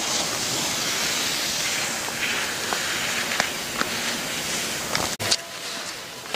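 Skis scraping across hard-packed snow through slalom turns, a steady hiss that swells with each turn, with a few light clicks in the middle. The sound cuts off abruptly near the end.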